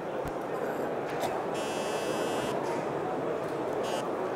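Steady background hubbub of a busy exhibition hall. An electronic buzz comes in for about a second in the middle and again briefly near the end.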